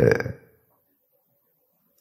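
The tail of a man's speaking voice, ending in a low, creaky fade about half a second in, followed by a pause of near silence.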